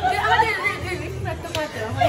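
Several women talking and exclaiming over one another, excited and overlapping, with a steady low background hum underneath.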